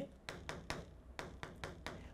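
Writing on a board: about nine light, irregular taps and short strokes as a word is written.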